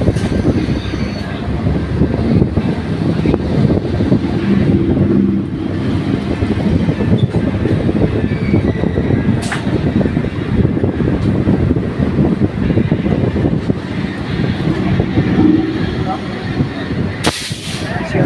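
Rumble and rapid clatter of train wheels on rail as an electric multiple-unit local train passes close alongside a moving train, heard through an open coach door with air rushing past. A brief louder rush comes near the end.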